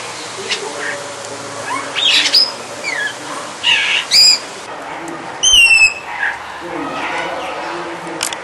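Brahminy starling calling: a run of short harsh squawks and quick gliding whistled notes. The loudest is a clear whistle falling slightly in pitch, about five and a half seconds in.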